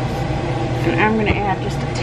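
Kitchen range hood fan running steadily with a low hum, with a voice heard briefly in the middle.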